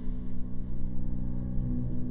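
A steady low drone of several held low tones from the film clip's soundtrack.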